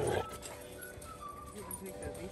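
Quiet dog-park ambience with faint dog sounds and distant voices, after a laugh trails off right at the start.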